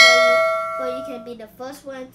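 A single bright metallic ding like a struck bell, ringing out with several clear tones and fading away over about a second.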